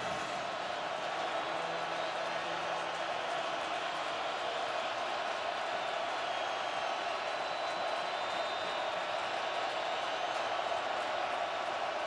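Large football-stadium crowd making loud, steady noise on an opponent's third down: a dense, even wall of many voices that neither swells nor drops.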